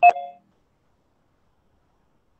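A short electronic chime, several steady tones sounding together for under half a second at the start, then silence: a video-call notification sound as a participant joins.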